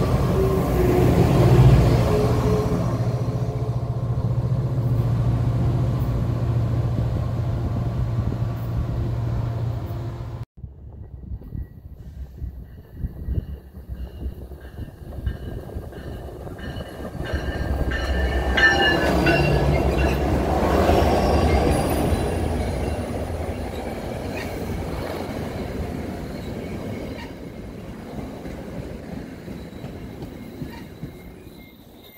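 A New Jersey Transit passenger train's locomotive passes close by with a loud, steady low hum. After an abrupt cut about ten seconds in, a second train approaches, swells loudest about twenty seconds in with some thin high squeals, and its coaches roll past as the sound fades.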